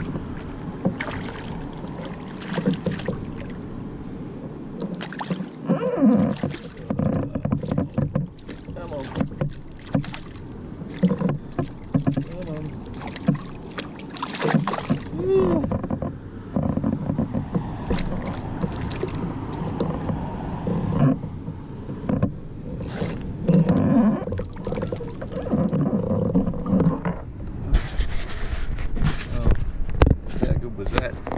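Irregular knocks, rattles and handling noises in a Hobie kayak on the water, with a muffled voice at times.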